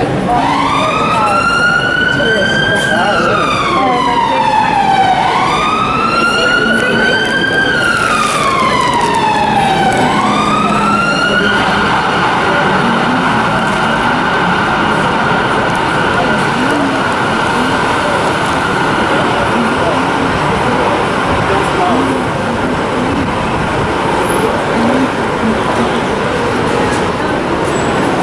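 An emergency vehicle siren wails, its pitch rising and falling slowly about every five seconds, then holds one steady note from about eleven seconds on, over continuous city street noise.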